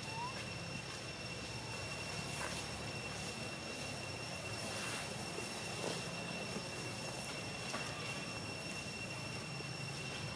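Steady outdoor background sound: one constant high-pitched whine over a low hum and hiss, with a few faint short chirps.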